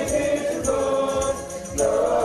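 Church choir singing a hymn in several voices, with a steady percussive beat under the voices.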